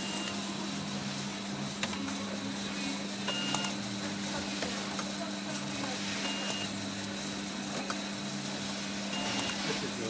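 Automatic self-adhesive labelling machine running: a steady motor and conveyor hum with light mechanical clicks, and a short high beep about every three seconds.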